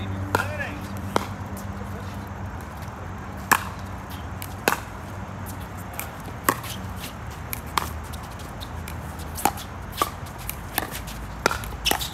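Pickleball paddles striking a hard plastic ball in a doubles rally: about a dozen sharp pops, one to two seconds apart at first, then quicker volleys near the end.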